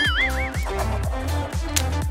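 Background music with a steady bass and beat, and a short wobbling, warbling tone in the first half-second.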